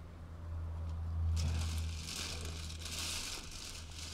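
A low steady hum that swells about a second in, with a soft hiss joining at about one and a half seconds.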